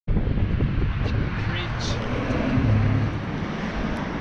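City street sound with steady traffic running, and a man's voice talking over it.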